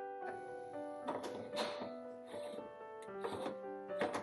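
Soft background piano music, with a few short scraping sounds over it from a spoon working ground coffee in a stainless moka pot's filter basket.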